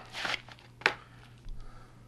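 A shrink-wrapped plastic DVD case being handled: a short plastic rustle, then a single sharp click a little under a second in, and a faint soft knock near the end.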